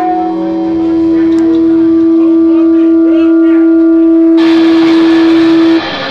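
Electric guitar amp feedback: one steady, loud tone held for several seconds, with cymbals coming in about four seconds in. The tone cuts off suddenly near the end.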